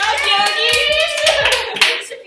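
A small group clapping their hands, with several excited voices over the clapping.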